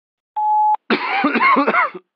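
A short single-tone electronic beep, the record tone of a voice message, then a man coughing for about a second.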